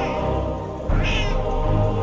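A cat meowing once, about a second in, over steady background music.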